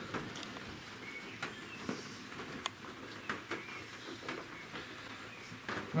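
Faint scattered clicks and paper rustling from a pen and an open book as a visitors' book is written in.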